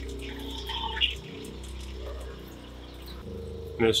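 Faucet running into a bathroom sink as bleach sanitizing solution is flushed through an RV's fresh water lines, over a steady low hum that drops slightly about three seconds in.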